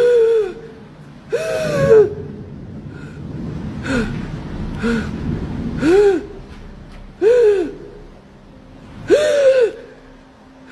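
A person's voice making short, high-pitched vocal cries, each rising and falling in pitch, about seven times at intervals of one to two seconds.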